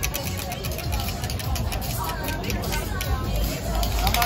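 A prize wheel spinning, its pointer ticking against the pegs and the ticks spacing out as the wheel slows. Crowd chatter and background music underneath.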